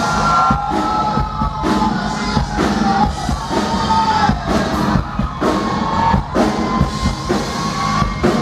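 Live Tejano band music: a singer over button accordion, guitar and drum kit, with a steady beat.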